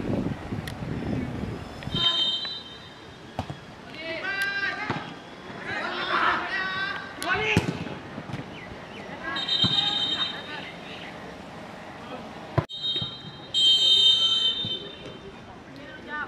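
Live pitch-side sound of a youth football match: boys shouting to each other across the field, with several short, shrill whistle blasts, the loudest and longest about three quarters of the way through.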